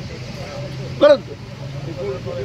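Steady low hum of background road traffic during a pause in a man's speech. He speaks one short word about a second in.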